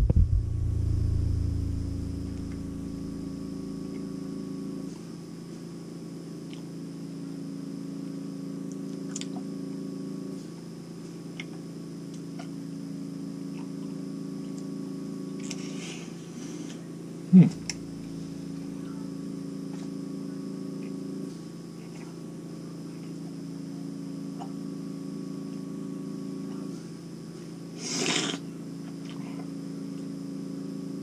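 A steady low hum of several tones runs throughout, with faint small clicks of a man chewing hard candy (Skittles) with his mouth closed. He gives one short "mm" about halfway through, and there is a brief breathy rush near the end.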